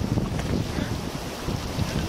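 Wind buffeting the microphone in uneven gusts, over the wash of small waves spreading in shallow water at the shoreline.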